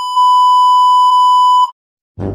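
A single steady, high-pitched bleep, the kind edited in as a TV-style censor beep, held for about a second and a half and cutting off suddenly.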